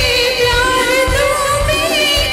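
A woman singing a Hindi film song into a microphone with long, wavering held notes, over live band accompaniment with a steady low beat.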